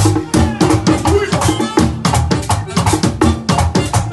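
Live Latin dance-band music driven by hand percussion, with tambora, congas and metal güira, playing a dense, quick, even run of drum strokes.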